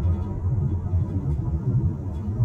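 Low, uneven rumble of a car driving, heard from inside the cabin.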